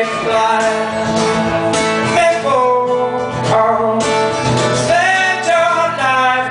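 Steel-string acoustic guitar strummed in a steady rhythm, with a man's voice holding long, gliding sung notes over it.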